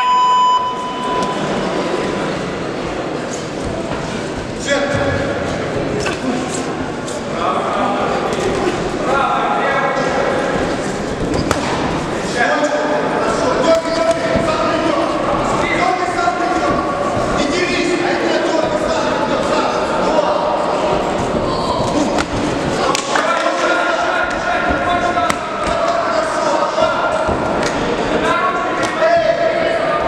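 A single ringing signal tone sounds at the start of a kickboxing round. Indistinct shouting from coaches and spectators follows throughout, over the thuds of gloved punches and kicks landing, echoing in a large sports hall.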